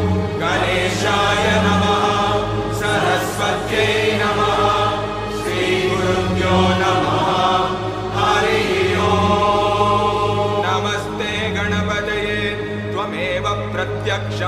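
Sanskrit mantra chanting sung to devotional music, with a steady low drone underneath.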